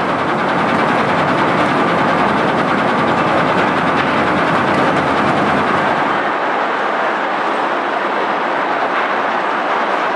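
Loud, steady din of a waste-sorting plant's conveyor belts and sorting machinery running, with a continuous rattle. The deepest rumble thins about six seconds in.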